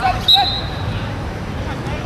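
Players' voices calling out on a small-sided football pitch over a steady open-air background, with a short high whistle note about a quarter second in.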